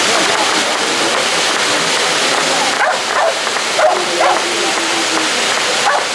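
Ground fountain fireworks (gerbs) burning with a steady, loud rushing hiss of sparks. A few short barks, as of a dog, break in about three to four seconds in.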